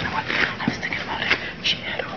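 Whispered speech: short, breathy, hushed talk.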